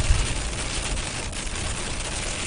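Rain mixed with pea-size hail pelting a moving car's windshield and roof, heard from inside the cabin: a dense, steady patter of fine ticks over the low rumble of tyres on the wet road.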